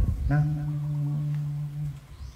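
A man's voice holding one long, steady, low-pitched syllable for about a second and a half: a word drawn out in speech.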